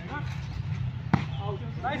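A volleyball struck once by hand about a second in, a single sharp hit, with players' voices calling around it.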